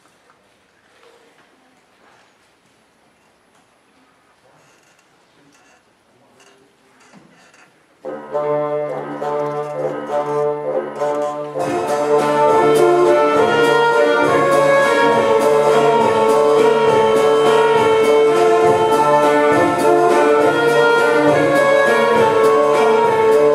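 A quiet hall for about eight seconds, then a mixed ensemble of brass, woodwinds and strings enters with a held chord over a low sustained note. A few seconds later the full band comes in louder, with a steady pulse in the bass.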